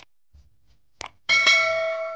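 Subscribe-button animation sound effect: two mouse-click sounds about a second apart, then a bright notification-bell ding that rings on and slowly fades.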